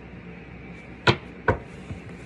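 Two sharp taps about half a second apart: a tarot card deck knocked against a wooden tabletop.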